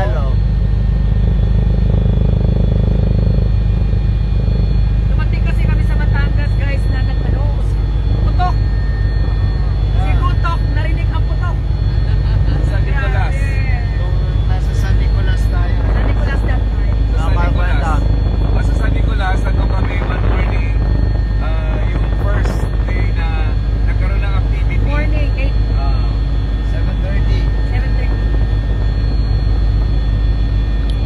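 Helicopter heard from inside the cabin: a loud, steady drone of engine and rotor that holds at an even level throughout.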